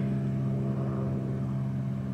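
A steady, fairly loud low machine hum made of several held tones, like an engine running at idle.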